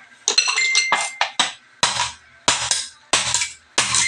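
A kitchen knife chopping down on a plastic cutting board, cracking off the pointed tips of bagongon snail shells: a series of sharp knocks, the later ones coming about every two-thirds of a second.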